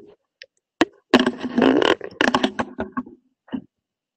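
A sheet of printer paper being handled and folded in half close to the microphone, rustling and sliding against the table in irregular bursts, loudest in the second second.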